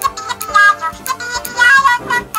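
Two Little Live Pets Wrapples toys singing together through their built-in speakers: a high-pitched electronic tune of short separate notes over a lower sustained backing.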